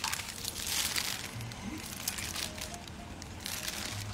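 Paper and plastic food wrapping crinkling and rustling as a takeaway rice packet is unwrapped by hand.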